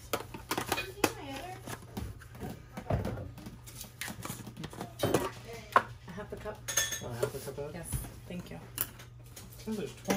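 Kitchen utensils, jars and lids clinking and knocking on a stone counter as ingredients are handled. Voices are heard between the clinks.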